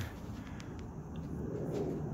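Faint steady background noise, mostly a low rumble, with a couple of light clicks.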